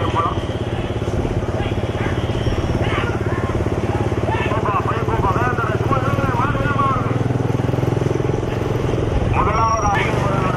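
A motor vehicle's engine running steadily at speed, with men's shouts rising and falling over it in the middle few seconds.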